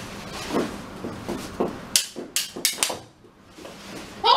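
Knee hockey play: softer knocks and scuffles, then a quick run of about five sharp clacks about two seconds in, from the plastic mini sticks striking the ball and each other.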